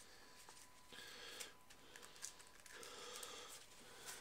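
Near silence with faint rustling of cardboard playing cards being gathered into a deck by hand, in two soft patches about a second in and about three seconds in.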